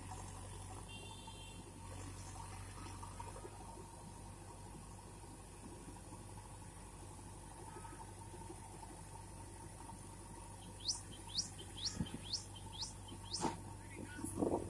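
Steady low hum of a JCB backhoe loader's diesel engine running. In the last few seconds a bird gives a run of short calls that fall in pitch, about two a second, and there is a sharp knock near the end.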